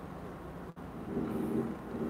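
Steady low background noise with no speech: a faint hiss and rumble that drops out for an instant about three-quarters of a second in, with a faint low hum rising briefly about a second in.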